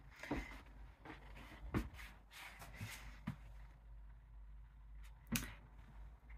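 Quiet small-room tone with a handful of faint, short taps and rustles spread through it, the last and loudest a little after five seconds in.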